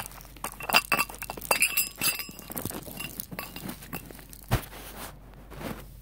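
Irregular clicks and light clinks of small hard toy pieces being handled, with a dull bump about four and a half seconds in.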